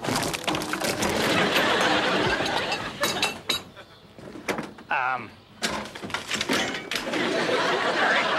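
A homemade bicycle built from car parts collapses under its rider, its metal parts clattering to the floor in knocks about three seconds in and again around six seconds. A studio audience laughs loudly around the crash.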